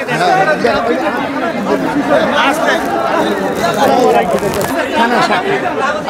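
Loud crowd chatter: many men's voices talking over one another at once.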